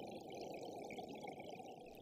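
Faint, grainy synthesizer texture from Absynth 5's Aetherizer granular effect, with its bandpass filter set to its highest frequency.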